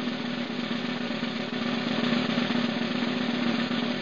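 Background music: a sustained drum roll over a held low note, growing slightly louder partway through.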